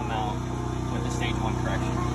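A steady low engine-like hum with an even pulse, with faint voices in the background.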